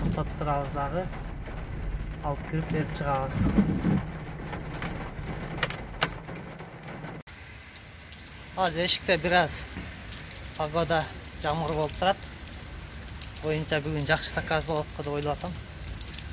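Steady rain falling, heard under a man's talking. Partway through it drops to a quieter rain hiss as the sound cuts from inside a car to outdoors.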